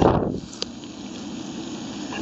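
Handling noise from the camera being moved about close over the fish on the grass: a brief rustle right at the start that fades within half a second, then a faint steady low rumble with a small click.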